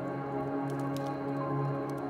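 Slow, soft music of long held notes, with a few sharp crackles and pops from a wood fire over it, the strongest about a second in.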